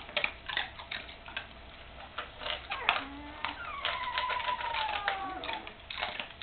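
A dog crunching dry kibble from a bowl: irregular crisp clicks and crunches. About three and a half seconds in comes a long, thin whimper that slowly falls in pitch, the kind a young puppy makes.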